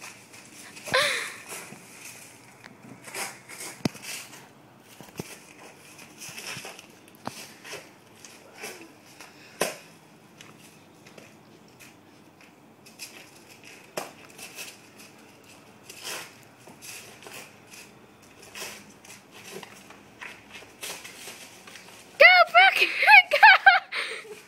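Feet scuffing and crunching over dry fallen leaves, with scattered short clicks and crackles. In the last two seconds a high-pitched voice cries out loudly in a quick run of short repeated bursts.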